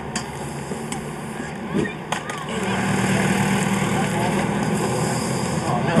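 Outdoor camcorder sound with a steady hiss and a couple of short knocks about two seconds in, then a vehicle engine running steadily as a low hum from a little before halfway.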